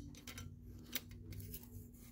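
Faint clicks and light handling noise, with one sharper click about a second in, over a low steady hum.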